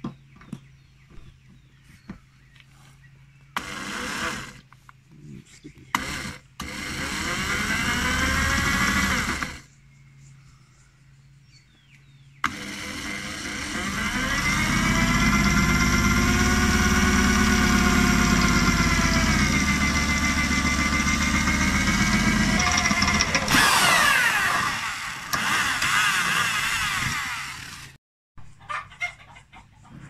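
Cordless drill boring holes through a radiator's aluminium mounting bracket, in several runs. The motor's whine climbs in pitch about seven seconds in, then holds steady for about ten seconds, and a further run stops suddenly near the end.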